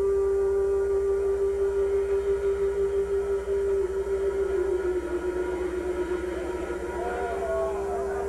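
A single long held note from an amplified electric instrument, nearly pure in tone, sagging slightly in pitch about halfway and coming back up near the end. A steady low amplifier hum runs underneath.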